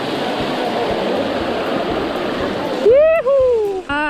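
Mountain bike tyres rushing through shallow running water, a steady splashing spray. Near the end the splashing gives way to a man's loud, high-pitched shout.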